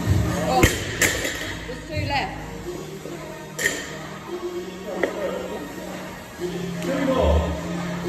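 Background music with vocals; about half a second in, a 60 kg loaded barbell is dropped from overhead onto rubber gym flooring, landing with a sharp thud and a second impact as it bounces. A single metal clink follows a few seconds later.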